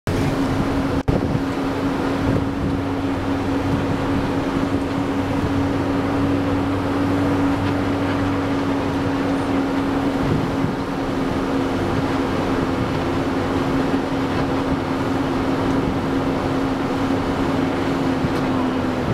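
Bus engine and road noise heard from inside the cabin: a steady drone with a held hum, with a brief dropout about a second in.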